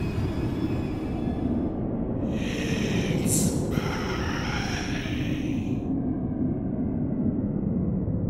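A steady low rumbling drone from the horror soundtrack, with a breathy, hissing whoosh that swells from about two seconds in, peaks in the middle and fades out near six seconds.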